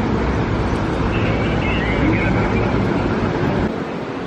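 Outdoor city ambience: a steady low rumble of traffic with faint distant voices. The rumble drops away suddenly near the end.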